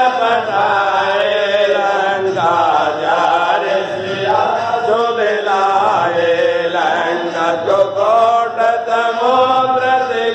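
Voices chanting a Hindu aarti hymn in a sustained, unbroken sung chant.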